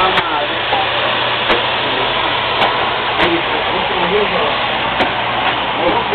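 Steady loud rushing drone of a tunnel ventilation blower pushing air through flexible ducting, with a low hum under it. Faint indistinct voices and a few sharp clicks come through.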